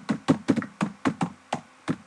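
Typing on a computer keyboard: about ten quick, unevenly spaced keystrokes, the last one near the end.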